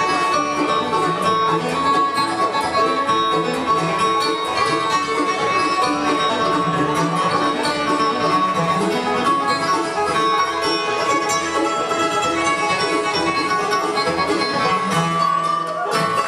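Live bluegrass band playing an instrumental: banjo lead over acoustic guitars, mandolin and upright bass, at a steady driving tempo.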